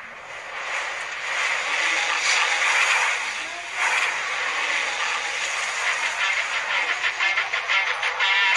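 Film sound effects for a burst of fire: a loud rushing noise, dipping briefly about four seconds in, then a fast fluttering pulse building near the end.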